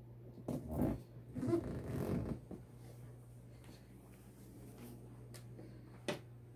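Two short scraping rustles, about half a second and a second and a half in, as a sheet of sublimation transfer paper is rubbed and pressed flat onto a cotton T-shirt, over a low steady hum.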